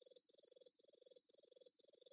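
Cricket chirping sound effect, the stock 'awkward silence' gag: a high, steady chirp repeating evenly, about two and a half trills a second.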